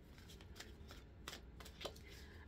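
A deck of oracle cards being shuffled by hand: a quiet, continuous papery rustle with light clicks of the cards striking one another, a few sharper ones in the second half.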